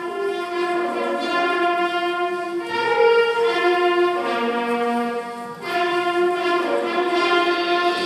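School concert band of wind, brass and percussion players starting a piece with soft, held chords that change every second or two, dipping briefly about five and a half seconds in.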